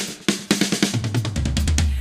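Drum kit playing a fill in a pop song: a run of snare and tom hits coming in quick succession, with a low bass note held under the last half second.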